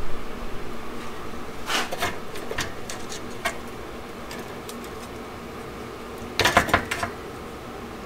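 Small metal hardware clinking and rattling on a workbench as bolts are fitted to a metal part by hand. A short run of clicks comes about two seconds in and a louder burst of clatter near the end, over a steady low hum.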